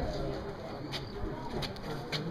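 Pigeons cooing, low and drawn out, under the murmur of people's voices, with a few sharp clicks.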